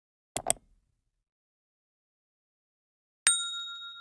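Two quick mouse-click sound effects, then about three seconds in a single bright bell ding that rings on and fades: the click and notification-bell effects of a subscribe-button animation.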